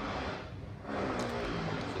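Building-work noise from a neighbouring house being renovated: a steady machine-like hum that grows stronger about a second in.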